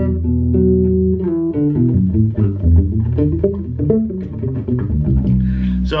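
Skjold Greyling electric bass (mahogany body, passive Skjold pickup) played fingerstyle through an Aguilar amp. First a held chord of ringing notes, then a quicker moving line, ending on a sustained low note.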